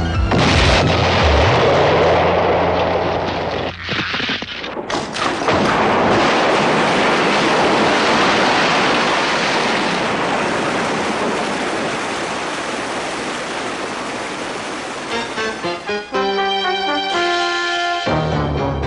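Cartoon sound effects of torpedo explosions against a sea dike: a blast just after the start and a second one about five seconds in, each followed by a long rushing noise of bursting water that slowly fades. Music with distinct notes takes over about two seconds before the end.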